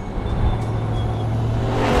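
Supercharged 6.2-litre V8 of a Hennessey H650 Cadillac Escalade running as the SUV drives along, a steady low engine note that grows louder near the end as it comes close.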